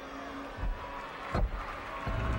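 Two dull thuds of a gymnast's feet landing on a balance beam, about half a second and a second and a half in, the second the louder, over the steady murmur of an arena crowd.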